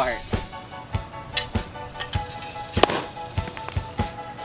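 Background music with a steady beat. About three seconds in comes a single sharp crack: a sabre striking the neck of a champagne bottle to knock it open (sabrage).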